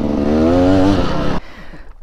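Dirt bike engine running under throttle, its pitch slowly rising, then cut off abruptly about one and a half seconds in, leaving a quieter low rumble.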